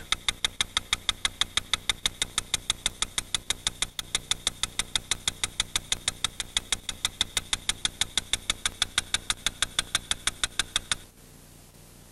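Hong Kong pedestrian crossing's audible signal ticking rapidly and evenly, about seven sharp ticks a second: the fast beat that tells pedestrians the green man is showing and they may cross. The ticking stops about a second before the end.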